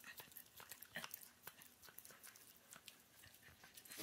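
Faint, irregular small wet clicks of a Maltese dog licking and chewing peanut butter off a hand, almost at the edge of near silence.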